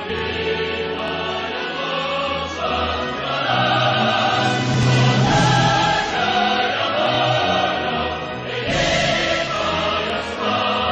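Background music: a choir singing long, sustained notes over an orchestra, swelling louder through the middle.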